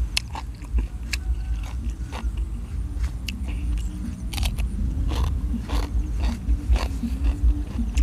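Close-up crunchy chewing of spicy apple snail salad, with many small sharp crunches. About four seconds in there is a bite into a raw green fruit or vegetable.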